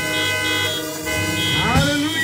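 Keyboard holding a sustained organ-style chord, with some upper notes dropping out about halfway through.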